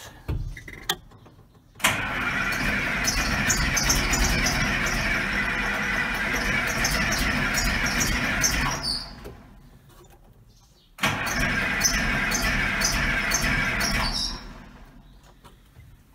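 Case 2090 tractor's six-cylinder diesel being cranked on the starter in two long attempts, about seven seconds and then about three, without settling into a run. Air is still in the fuel system after new fuel filters were fitted.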